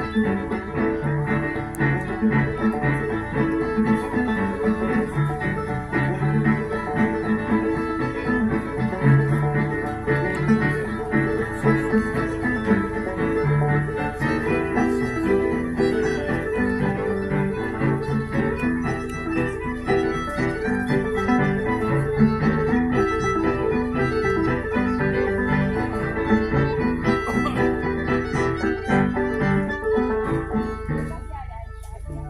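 Fiddle tune played live into a microphone and amplified through a PA speaker, with keyboard accompaniment.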